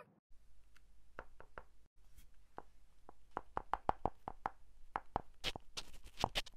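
A dragon puppet's jaw nibbling and pecking at a small clip-on microphone: a run of irregular sharp clicks and taps close to the mic, coming quicker and louder about halfway through.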